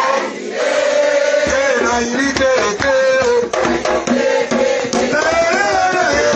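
Voices singing together in a worship song, accompanied by percussion: shaker rattles and a drum that comes in about a second and a half in.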